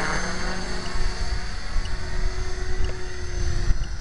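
Align T-Rex 500 electric RC helicopter in flight: a steady whine from the motor and rotor over a broad rushing noise.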